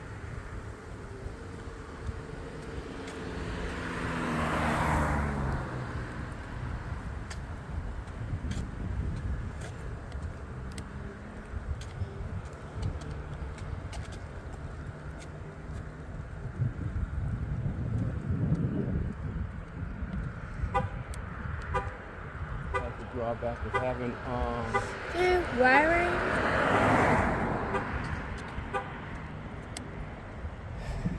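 Road traffic passing on the road alongside: one vehicle swells up and fades about four to six seconds in, and another passes, louder, near the end, over a steady low rumble with scattered short clicks. Brief pitched sounds that bend up and down come in a little past twenty seconds.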